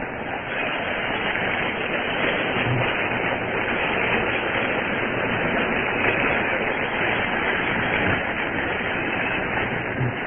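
Congregation applauding, building over the first second and then holding steady, heard through an old, dull-sounding recording.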